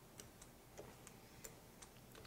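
Near silence broken by faint, irregular light clicks, about six to eight over the span, from a small hand roller being worked back and forth over pizza dough on a stone.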